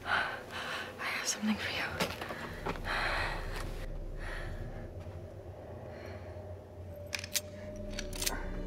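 Soft, breathy, partly whispered speech between a man and a woman, fading after the first few seconds. A few short faint clicks near the end.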